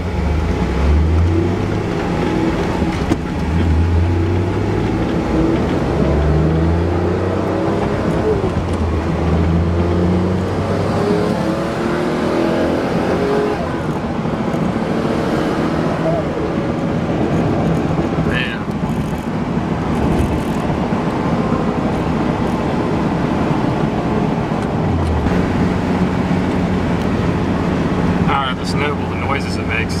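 Noble M400's twin-turbocharged 3.0-litre Ford Duratec V6 heard from inside the cabin while driving. Its pitch climbs and drops back several times in the first ten seconds or so as the car accelerates through the gears, then it runs steadily with road noise.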